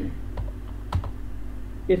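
Computer keyboard being typed on: a few separate keystrokes about half a second apart, over a steady low hum.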